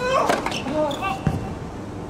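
A tennis serve: a player's rising grunt and the sharp crack of the racket striking the ball, followed by short voice calls and a dull ball thud a little over a second in.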